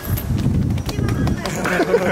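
People's voices and laughter, with scattered short sharp taps and a low rumble underneath; the voices come in near the end.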